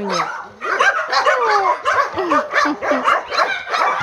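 A dog making a quick run of short whines and yelps, each cry falling in pitch, about three a second.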